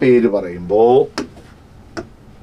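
A man's voice drawing out a word for about a second, followed by a single sharp click a little over a second in.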